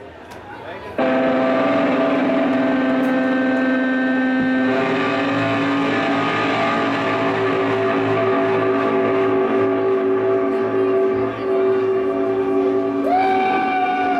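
Shoegaze band playing live: after a quiet first second, a loud wall of sustained, heavily distorted electric guitar and bass crashes in, holding chords that change a few seconds later.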